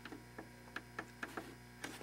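Faint, irregular light clicks, about six in two seconds, over a steady low electrical hum.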